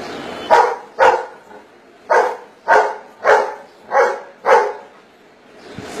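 A dog barking seven times, counting out its answer to "four plus three": two barks in quick succession, a pause of about a second, then five more evenly spaced barks.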